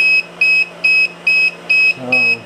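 12-volt power inverter's low-battery alarm beeping, a high-pitched beep repeating evenly about twice a second, five beeps in all. It is the sign that the battery feeding the 250-watt heater has run down to about 11 volts.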